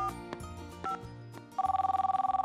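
Light background music, then about a second and a half in a mobile phone starts ringing: a fast, trilling two-tone electronic ring.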